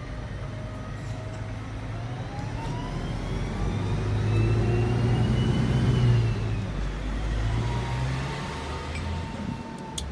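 Street traffic: a motor vehicle passing close by, its low engine hum and a whine that rises and falls in pitch growing louder to a peak about six seconds in, then fading.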